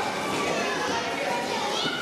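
A crowd of children talking and calling out over one another while playing a game, a steady jumble of young voices.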